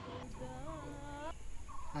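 A man wailing in exaggerated, wavering cries of lament: one drawn-out cry of about a second, then a short rising cry near the end.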